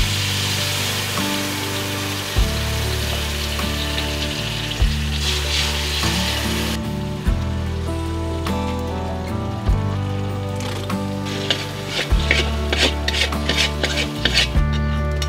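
Fish sauce and seasonings sizzling in a hot steel wok, a dense hiss that stops abruptly about seven seconds in. Near the end a metal spatula scrapes and stirs the sauce in the wok in quick strokes. Background music with steady low notes plays throughout.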